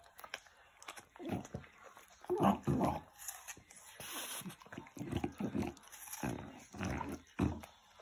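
A French bulldog eating an apple held out in a hand, mouthing and licking at it, heard as a run of short repeated sounds about two a second.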